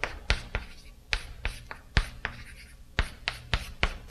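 Chalk writing on a chalkboard: about a dozen sharp, uneven taps of the chalk stick on the board, with short scratches between them as letters are chalked on.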